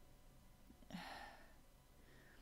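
A woman's soft sigh: one breath out, about half a second long, about a second in, against near-silent room tone.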